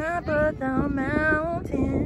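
A woman singing held, wavering notes, over a low rumble of wind on the microphone.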